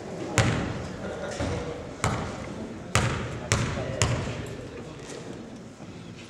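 A basketball bounced several times on a hardwood gym floor, each bounce a sharp knock with a short echo, as a player dribbles at the free-throw line before shooting. A murmur of crowd voices runs underneath.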